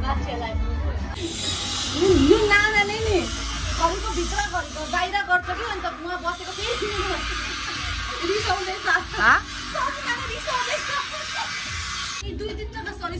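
Voices with music behind them, and a steady high hiss that starts about a second in.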